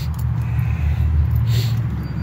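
Dodge Ram pickup's engine idling steadily: a low, even hum.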